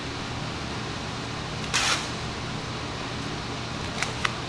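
Vinyl wrap film rustling with a brief hiss about two seconds in, as the sheet is stretched over a car door and pressed onto it. A steady low hum lies under it throughout.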